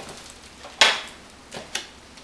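Footsteps of sneakers on a ceramic tile floor, with a sharp click a little under a second in and a smaller one near the end.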